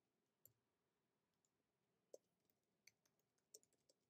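Near silence broken by a few faint, isolated computer keyboard keystroke clicks as text is typed.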